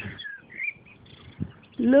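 A few faint, short bird chirps that glide up and down in the first second, with a soft knock about one and a half seconds in.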